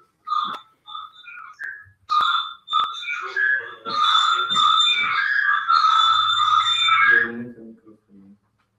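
High whistle-like tones: a few short notes, then a steady tone held for about three seconds from about four seconds in. Faint voices sit underneath.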